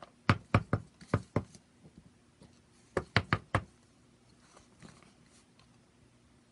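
Clear acrylic stamp block tapped repeatedly on an ink pad to ink a greeting stamp: a run of five quick knocks, then a pause and a second run of four.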